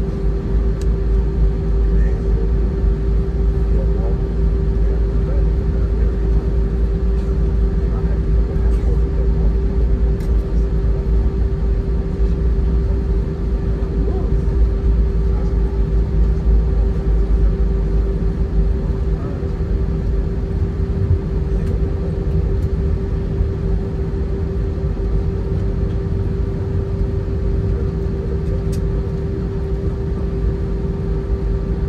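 Cabin sound of an Airbus A319-132 taxiing: steady rumble from its IAE V2500 engines and the wheels rolling on the taxiway, with a constant hum over it. The deep rumble eases a little about two-thirds of the way through.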